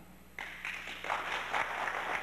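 Audience applauding, starting suddenly about half a second in after a short lull.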